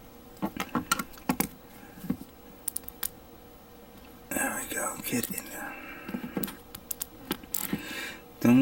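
Small plastic model-kit parts clicking and tapping sharply as they are handled and a head antenna piece is pressed into place with a rubbery tool. There is a short whispered sound about four seconds in.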